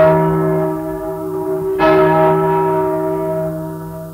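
A single large church bell, the former 1,155 kg Onze-Lieve-Vrouw-Hemelvaart bell cast in 1871, struck twice a little over two seconds apart, each stroke ringing on and slowly dying away. It is heard from a 1943 78 rpm record, with steady hiss and hum under it.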